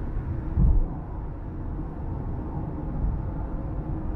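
Car cabin road noise at highway speed: a steady low rumble of tyres and engine, with a single low thump about half a second in as the tyres cross a joint in the road at the end of a bridge.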